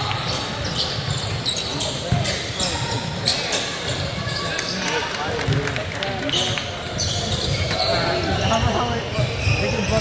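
Basketball game on a hardwood gym floor: a ball bouncing, sneakers squeaking and players' feet hitting the court, with players calling out.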